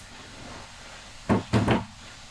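Two knocks of metal backstop parts being handled and set down, about a second and a half in.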